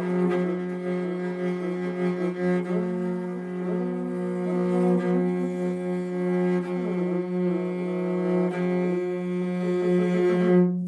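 Morin khuur (Mongolian horse-head fiddle) bowed in a galloping horse rhythm: a steady low drone note sounds throughout, with short fingered notes changing above it and the loudness pulsing with the bow strokes.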